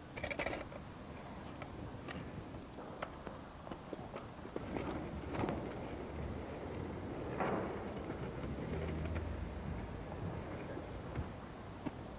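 A skateboard-style scooter with a balance pole (a Wetzer) being handled and ridden on pavement: scattered faint knocks and clacks of its board and wheels over faint steady background noise, the sharpest clatter about half a second in.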